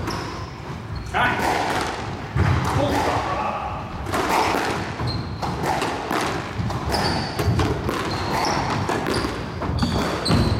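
Squash rally: the ball smacking off rackets and the court walls again and again, each hit echoing in the enclosed court, with shoes squeaking on the wooden floor.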